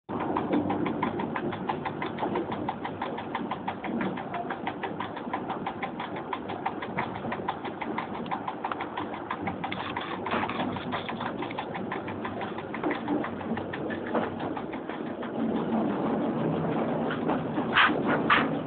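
Running noise of an EN57 electric multiple unit in motion, heard from the driver's cab, with a fast, even ticking of about seven a second and two louder short bursts near the end.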